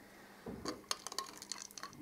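A hand knocking against the empty plastic tube holders in the rotor of an open bench centrifuge: a scatter of light clinks and taps, starting about half a second in.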